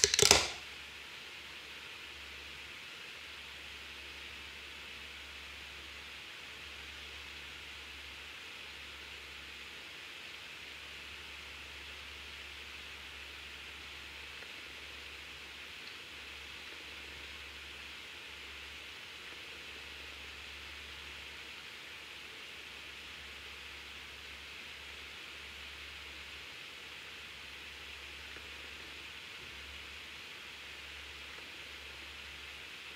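Room tone: a steady faint hiss with a low hum that comes and goes, after a short loud rustle or knock right at the start.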